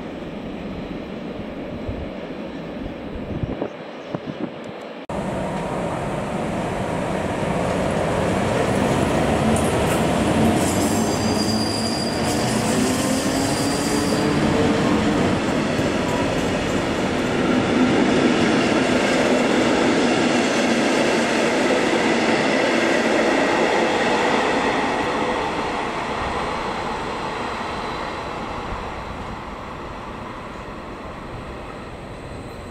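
A locomotive-hauled passenger train running past close by, its wheels rolling over the rails and growing louder from about five seconds in. A high wheel squeal comes from about ten to fourteen seconds, then the noise slowly fades. Before that there is a quieter, more distant train rumble with a few clicks.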